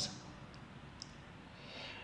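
Quiet room tone in a pause in a man's talk, with two faint mouth clicks and a soft intake of breath near the end, just before he speaks again.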